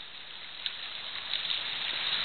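Steady rushing noise of flowing creek water, with a faint tap about two-thirds of a second in.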